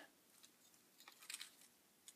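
Near silence, with a few faint clicks about a second in from a small plastic LEGO brick model being handled and turned in the hands.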